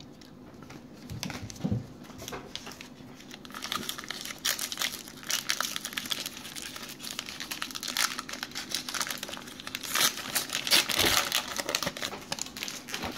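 Trading-card pack wrapper crinkling as it is handled and opened, a dense crackle that sets in about a third of the way in and is loudest near the end. A couple of soft thumps come before it.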